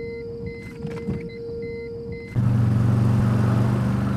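Road and engine noise of a car: a low rumble with a steady tone and short repeated beeps over it, then about two seconds in an abrupt cut to a louder, deeper steady drone.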